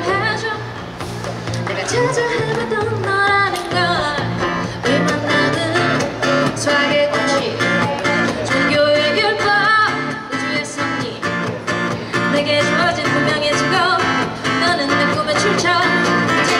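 Acoustic guitar playing a song intro, settling into a steady strummed rhythm about four seconds in, with a voice singing over the opening seconds.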